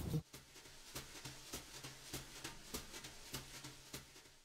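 Faint, quick strokes of a brush or dauber spreading polyacrylic sealer over painted chipboard, about three soft strokes a second, over a low room hum.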